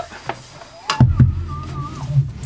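The aluminium frame of a diode laser engraver is lifted and set down on a wooden board, making one sharp knock about a second in. A low rumble and a faint wavering tone follow.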